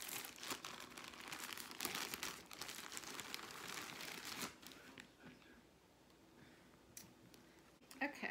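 A plastic packaging bag crinkling and tearing as it is opened for the first four and a half seconds, then fainter rustling and a single click near the end.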